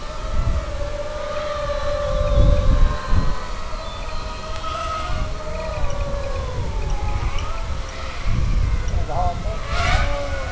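Racing quadcopters' electric motors and propellers whining steadily, the pitch drifting slowly up and down with throttle. Low rumbles come in about two to three seconds in and again near nine seconds.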